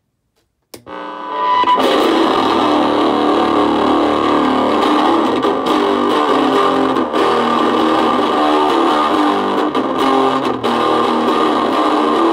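Electric guitar, a Fender Stratocaster, played through a 1980s Peavey Decade 10-watt combo amp with an 8-inch Celestion speaker. It starts about a second in and is played loudly and continuously.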